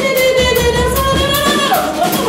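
A woman's voice holding one long sung note that wavers slightly, then steps up in pitch near the end, with a drum kit playing beneath it.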